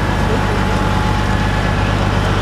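Caterpillar 395 hydraulic excavator's diesel engine idling steadily, a low drone with a faint steady whine above it. It is a non-Tier 4 engine, running unrestricted without emissions equipment.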